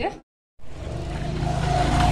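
After a moment of total silence, a steady low rumble of outdoor street noise builds up, with a short steady tone sounding near the end.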